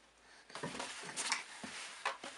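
Soft rustling and light knocks from about half a second in, as a baby shifts and drops her legs on a vinyl-covered changing pad.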